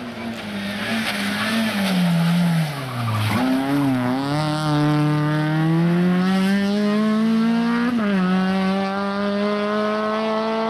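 Peugeot 206 rally car engine: the revs fall as it slows for a bend, then it pulls hard out of the corner with the pitch climbing steadily. About eight seconds in the pitch drops suddenly at an upshift, then climbs again.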